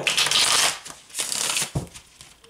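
A deck of tarot cards riffle-shuffled by hand: two quick rattling bursts of cards flicking together, the second ending in a soft thump.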